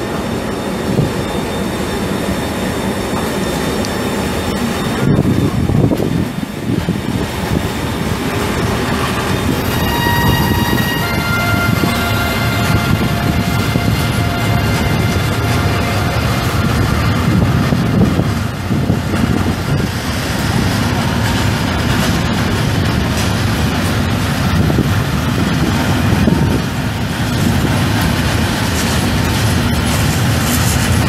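A long freight train of empty flat wagons, hauled by an electric locomotive, rolling through a station with a steady rumble of wheels on rail. High steady tones ring for several seconds about ten seconds in.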